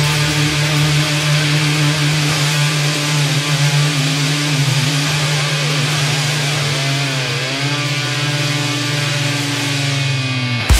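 Heavy rock music: a distorted electric guitar chord held and ringing out with the drums dropped out, with a bent note that dips and comes back up about seven seconds in.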